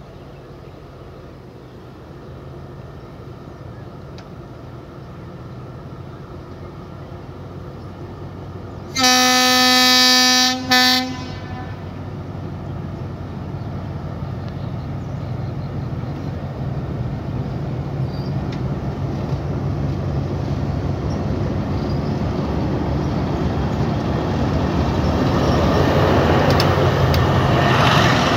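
Diesel locomotive horn sounding a long blast and then a short toot about nine seconds in, over the steady drone of the locomotive's diesel engine. The drone grows louder as the train comes slowly closer across a steel bridge.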